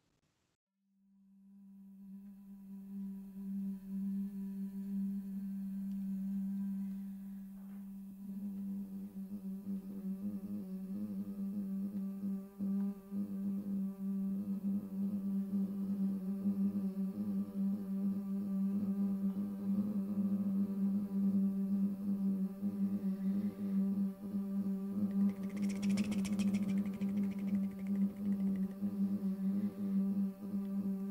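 Live looped vocals: a sustained sung tone fades in about a second in and is held steady while further vocal layers build up over it into an atmospheric drone, with a brighter, breathy layer joining a few seconds before the end.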